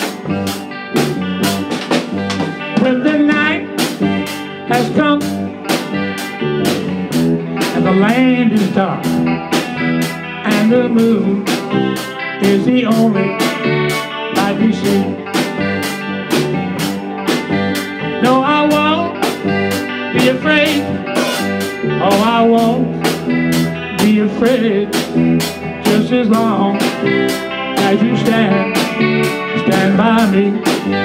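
Live blues band playing an instrumental passage: electric guitar with bent notes over bass, keyboard and a drum kit keeping a steady beat.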